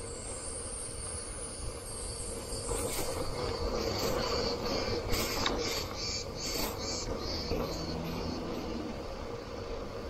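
Bicycle rolling downhill on rough asphalt: tyre rumble and wind on the handlebar microphone, with a faint steady whine. A run of short high-pitched pulses comes in the middle, where the sound is loudest.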